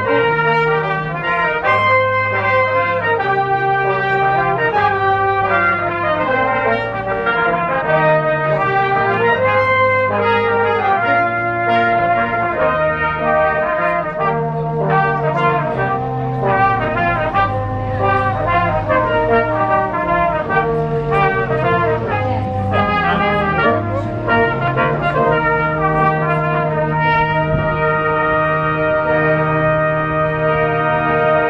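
Brass band playing a tune at a steady loudness, cornets carrying the melody over a moving bass line of lower brass.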